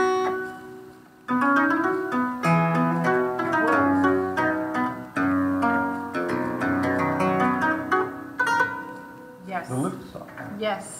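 Double-manual harpsichord being played. A chord dies away, then a lively passage of plucked notes starts about a second in and runs until just before the end.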